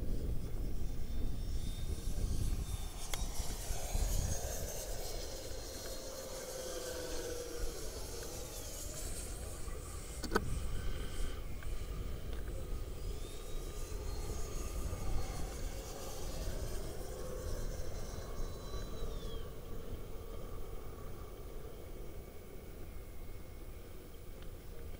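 Twin 64 mm electric ducted fans of an Arrows F-15 RC jet whining in flight, the pitch rising and falling as it makes two passes, over low wind rumble on the microphone. A single sharp click about ten seconds in.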